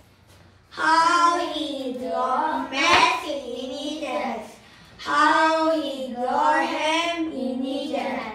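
Children's voices in three long sing-song phrases, with a pause about a second in and another just past the middle.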